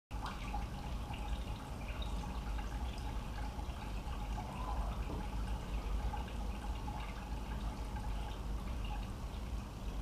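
Water trickling and dripping over a steady low hum.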